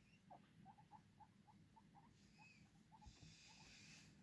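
Guinea pigs giving faint, short squeaks, about three or four a second, as they potter about.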